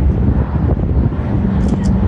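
Wind buffeting the microphone, a loud uneven low rumble, with a faint steady hum coming in a little past halfway.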